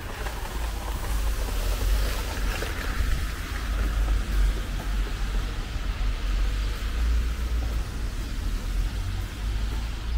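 Street traffic: tyre hiss of a car passing on the wet road, swelling during the first few seconds and fading, over a steady low rumble.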